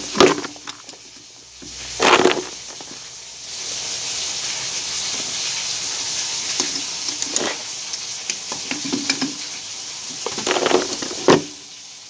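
A steady hiss of water running through the open plumbing, which cannot be shut off. A few sharp knocks of tools and fittings come near the start, at about two seconds and near the end.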